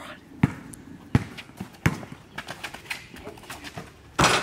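Basketball bounced on a concrete driveway: three sharp bounces about 0.7 s apart, followed by lighter, quicker taps.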